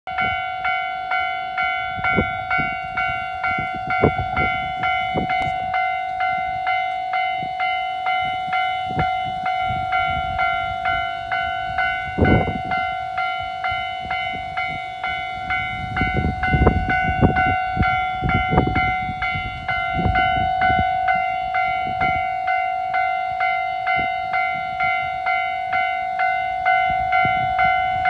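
Electronic level-crossing warning bell ringing in an even, repeating clang of about two strokes a second, signalling an approaching train.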